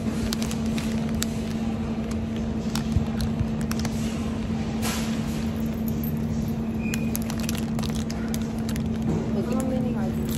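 Plastic flower sleeves crinkling and rustling with scattered clicks and knocks as bunches of flowers are handled at a shopping cart, the sharpest knock about three seconds in, over a steady low hum.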